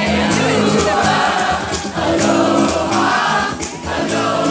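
A live band playing a song with many voices singing together, held notes over steady bass and drum beats.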